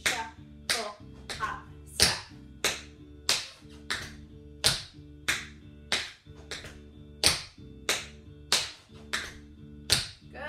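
Tap shoes striking a hard floor in shuffle steps, an even rhythm of about three sharp taps every two seconds, over quiet background music.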